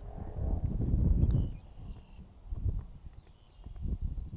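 Wind buffeting an outdoor microphone: an uneven low rumble that swells about a second in and then dies back to lighter gusts.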